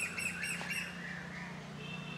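A bird calling in a quick run of short repeated chirps, about six a second, that stops about a second in, over a low steady hum.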